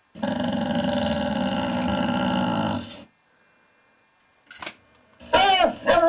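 A dog's steady, loud growl lasting about three seconds that cuts off suddenly, then after a pause a short yip and a loud bark near the end.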